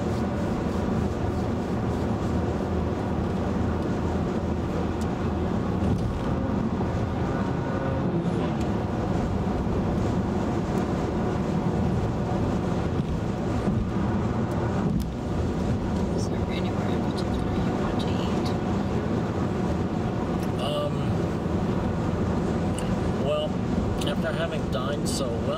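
Steady tyre and road noise inside the cabin of a 2011 VW Tiguan cruising at highway speed.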